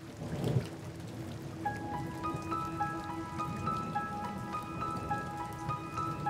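Steady rain with a short low rumble of thunder about half a second in. From near two seconds in, soft background music of repeating high notes over a held low tone comes in.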